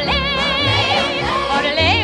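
Yodelled singing with instrumental accompaniment, the voice flipping quickly between low and high notes in short wavering phrases.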